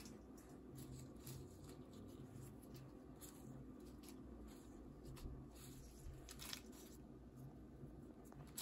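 Very faint rustling of rose petals being pulled apart by hand and dropped into a steel bowl: a few soft scattered ticks over quiet room tone.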